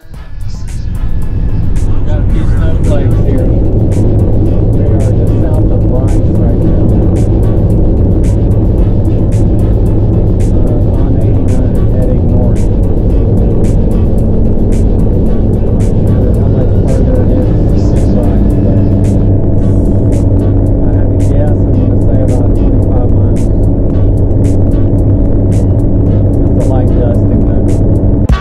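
Loud, steady engine and road noise heard from inside the cab of a Class C motorhome driving on the highway. The engine note steps up in pitch twice in the second half.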